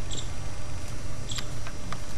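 Steady low outdoor rumble with two brief high chirps, one near the start and one about a second later, plus a few faint clicks.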